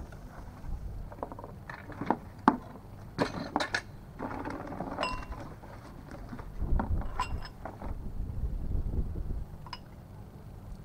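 Cardboard packaging handled and pulled open while the parts of a boxed hydraulic car jack are taken out: a string of knocks and rustles, with a couple of short metallic clinks that ring briefly about five and seven seconds in.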